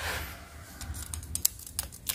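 Small, faint metallic clicks and taps from a steel feeler gauge blade being worked against a straight edge on a cylinder head's gasket face, as the head is checked for warpage; the clicks come in an uneven run in the second half.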